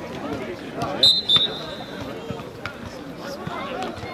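Referee's whistle blown twice in quick succession, two short shrill blasts about a second in.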